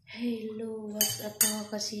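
A woman speaking, with two sharp clinks about a second in.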